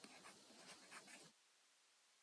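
Faint, irregular scratching of a stylus writing by hand on a tablet, stopping about one and a half seconds in.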